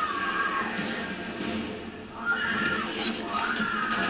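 Film soundtrack: tense score music with long cries that rise and fall in pitch, the last two starting about two seconds in and again near the end.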